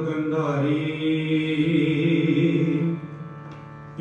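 Harmoniums holding a steady sustained chord as the instrumental opening of a kirtan. The sound drops much quieter about three seconds in.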